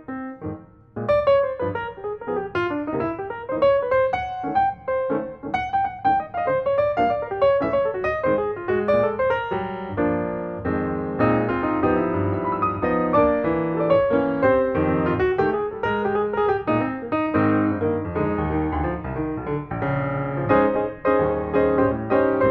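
Piano music playing, a melody over chords, with a brief break about a second in.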